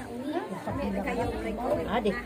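Several people chatting, speaking over one another.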